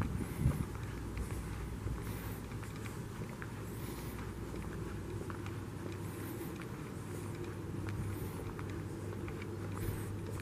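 Footsteps of someone walking on a concrete sidewalk, a soft scuff about once a second, over a steady low hum.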